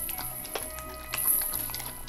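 Background music, with a Siberian husky licking peanut butter off a metal spoon: a few short, wet licking clicks over the music.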